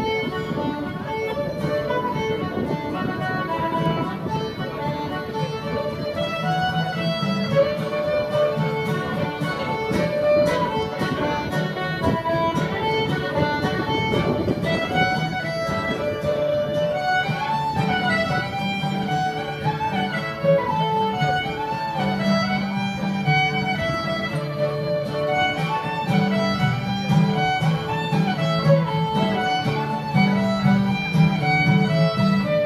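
Fiddle playing a lively tune, accompanied by a strummed acoustic guitar, at a steady level throughout.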